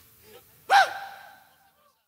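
A man's single short shout, about three-quarters of a second in, rising then falling in pitch, with the studio room's echo trailing off after it.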